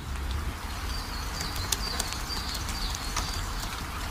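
Steady rain falling, with a few sharp drip ticks, while a small bird gives a run of short high chirps in the middle.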